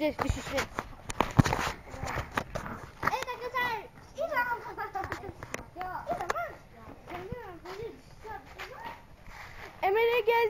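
Children's voices talking, high and light. In the first couple of seconds, knocks and rubbing from the camera being handled and covered.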